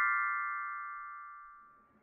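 The ringing tail of a short chime-like music sting: a held bell-like chord fading steadily away over about a second and a half.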